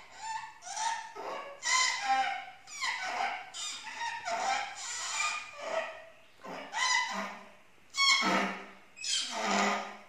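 A boy's voice imitating animal calls: a run of short, high-pitched cries, about eight of them, with brief pauses between.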